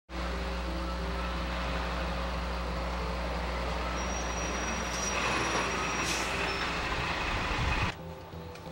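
Diesel coach bus engine running steadily close by, a low hum under a broad rumble, with a short hiss about six seconds in.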